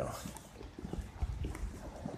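Faint footsteps of a person walking, a few soft irregular knocks over low steady background noise.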